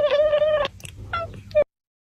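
Domestic cat calling: one drawn-out meow of about a second, then two short chirps. The sound cuts off abruptly near the end.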